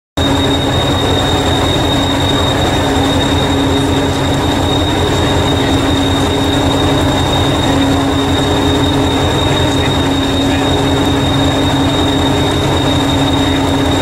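Engine of Hastings diesel-electric multiple unit 1001 (a Class 201 'Thumper') running steadily, with a deep rapid throb, a steady hum and a thin high-pitched whine over it.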